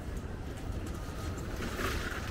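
Outdoor city street ambience: a steady low rumble, with a brief higher-pitched sound near the end.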